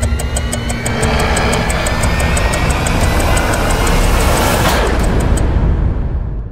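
Trailer score and sound design building to the title card: a heavy low rumble under rising tones, with fast ticking at about five a second. A whoosh comes near the end, and the ticking stops just after it.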